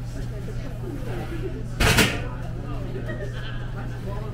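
A loud, short clank about two seconds in, as the copper candy kettle is set back down on its burner. Under it runs a steady low hum, with voices in the background.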